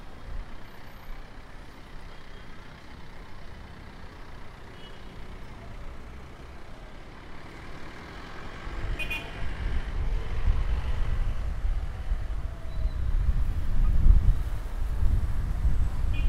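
City road traffic passing at an intersection, engines and tyres; about halfway through a loud low rumble builds and stays as a truck passes close.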